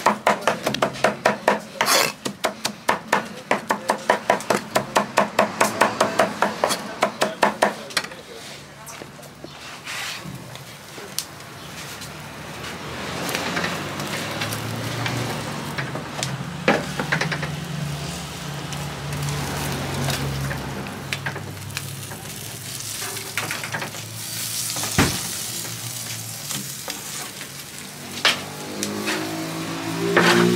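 A knife chopping fire-roasted red peppers on a wooden block, rapid even strikes about three a second for the first eight seconds. Then softer scraping and sizzling as meat is shaved from a döner spit and handled on a hot tray, with a few single sharp clicks.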